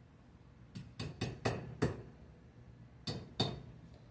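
A plastic spoon knocking against a pan to shake butter off into it: a quick run of about five knocks, then two more near the end.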